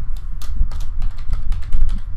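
Computer keyboard typing: a quick run of keystroke clicks as a word is typed, over a steady low hum.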